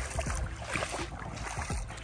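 Bare feet wading through shallow water over a sandy bottom, with soft, irregular sloshing.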